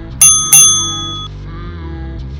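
Two quick, bright bell dings about a third of a second apart, each ringing out and dying away within about a second, over steady background music.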